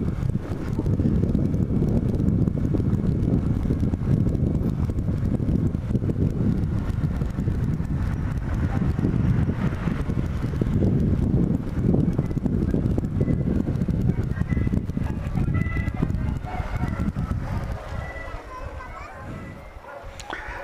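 Small single-cylinder motorcycle riding through city streets, with steady wind rush on the microphone over the engine. The sound eases off near the end as the bike slows to a stop.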